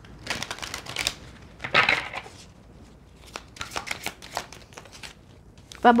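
Deck of oracle cards shuffled and handled by hand: papery rustling and flicks, loudest about two seconds in, then a run of short, light card flicks.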